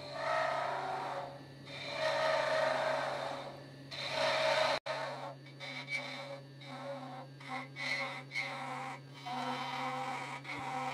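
Laguna 1524 wood lathe humming steadily while a carbide Easy Wood cutter cuts a thin spinning maple finial: three longer, swelling cutting passes in the first five seconds, then shorter, choppier cuts. The sound drops out for an instant a little before the middle.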